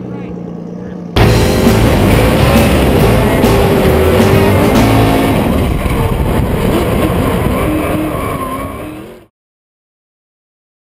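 Drift car's engine revving hard with tyres skidding through a drift, starting abruptly about a second in and cutting off suddenly near the end. Before it, a low steady hum.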